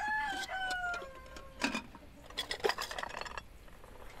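A rooster crowing once, a long call that falls slightly in pitch, followed by a few faint scattered clicks.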